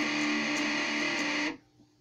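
Electric guitar, a Stratocaster-style solid-body tuned to drop D, holding a sustained note through an amp with a few light pick ticks. The note is cut off abruptly about a second and a half in.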